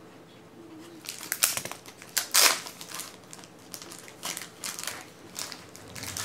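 Trading-card packaging crinkling as it is handled. Irregular crackles and rustles start about a second in.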